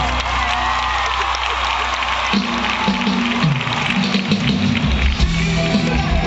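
Live band music played on stage, heard from the audience through a phone's microphone. Held low notes give way to a moving bass line about two seconds in.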